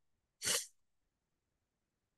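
A single short, breathy burst of noise from a person, about half a second in and lasting about a quarter of a second, like a quick sniff or sharp breath.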